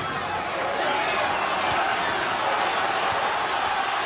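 Boxing arena crowd, a steady wash of many voices cheering and shouting.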